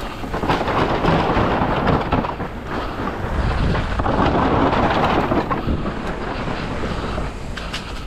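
Mountain bike tyres rolling over a footbridge of loose bamboo slats, a loud rattling clatter over a low rumble, strongest in two stretches before easing as the bike returns to the dirt trail.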